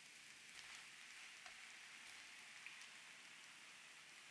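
Faint, steady sizzling from a hot nonstick frying pan as steamed taro and purple sweet potato mash cook in it, with small scattered crackles.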